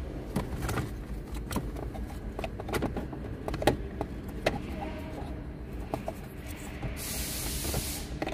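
Plastic dashboard trim and its clips being handled and pushed into place in the dash opening: a run of irregular clicks and knocks over a steady low hum. A brief hiss comes in near the end.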